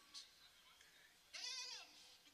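A person's voice giving one short, wavering, bleat-like cry about one and a half seconds in, over faint room tone.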